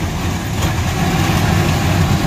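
A wheel loader's diesel engine running steadily as its bucket is pushed across wet concrete, scraping up mud and crop debris.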